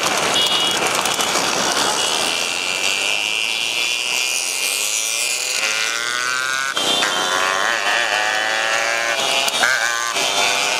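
Several motorcycle engines running at speed alongside the horse carts, with wind rushing past the microphone of a moving bike. From about halfway through, an engine's pitch climbs as it speeds up.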